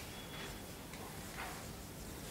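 Felt-tip marker writing on a whiteboard: a few faint, short scratching strokes.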